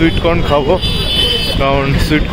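Busy street market: several people's voices over a steady low rumble of traffic, with a brief high-pitched tone about halfway through.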